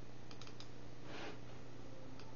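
Quiet room tone with a steady low hum. A quick run of three or four light clicks comes about a third of a second in, and a short soft hiss, like a breath, about a second in.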